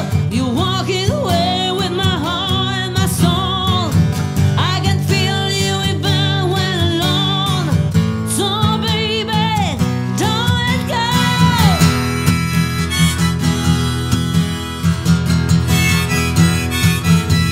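Harmonica played from a neck rack, its notes wavering and sliding down in pitch, over a strummed steel-string acoustic guitar.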